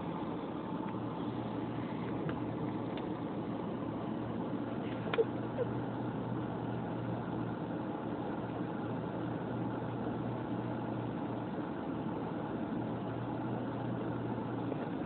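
Steady hum of a car idling, heard from inside the cabin, with one brief faint click about five seconds in.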